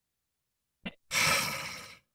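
A person sighing into a close microphone: one breathy exhale beginning about a second in and fading away over most of a second, just after a short click.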